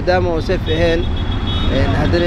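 A person speaking over a steady low rumble of street traffic.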